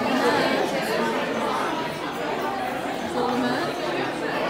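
Crowd chatter: many voices talking at once, with no single voice clear enough to follow.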